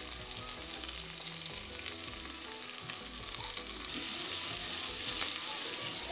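Spices and golden raisins frying in hot olive oil in a stainless steel pot, a steady sizzle that grows louder about four seconds in. A few light clicks come from the pot as it is stirred.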